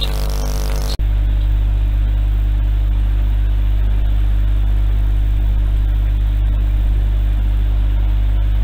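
Loud steady low electrical hum with an even hiss over it; the sound changes abruptly about a second in, as at a cut in the recording, and then runs on unchanged.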